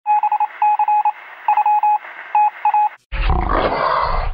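Electronic beeps at one steady pitch, switching on and off rapidly in uneven groups over a thin, narrow-band hiss like a radio signal, for about three seconds. They stop, and just after a brief gap a loud, deep, rumbling roar-like sound effect starts.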